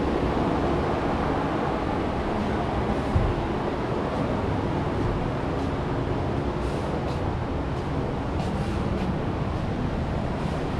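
Steady low background noise with no distinct events, like a fan or machinery running.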